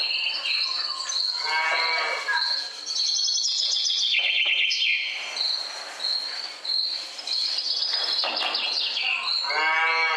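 Two drawn-out mooing calls, about two seconds in and again near the end, over continuous high-pitched chirping of birds and insects, as in a farmyard soundscape.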